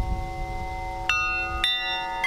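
Large metal tubular wind chimes ringing, several long sustained tones, with new strikes of the tubes about a second in and again about half a second later. A low rumble sits underneath.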